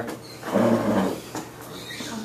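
A person's voice, brief and indistinct, about half a second in, over classroom room noise with a couple of faint clicks.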